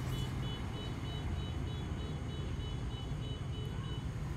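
A low, steady engine hum with a faint, high, quickly repeating beep above it.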